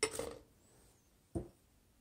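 Two knocks as peeled garlic cloves tipped from a small saucer land in a plastic blender cup: a sharper one at the start that dies away quickly, and a shorter one about a second and a half in.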